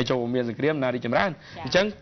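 A man speaking Khmer in a steady news-reading delivery, with short pauses between phrases.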